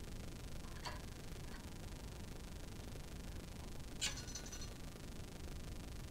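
Quiet room tone with two faint clicks of a new steel guitar string being handled at the tuners while restringing. The second click, about four seconds in, is sharper and leaves a brief high metallic ring.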